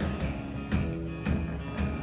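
Live rock band playing, electric guitar and drums over a heavy low end, with a steady beat of about two hits a second.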